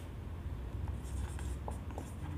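Marker writing on a whiteboard: faint, short scratches of the tip across the board, over a low steady hum.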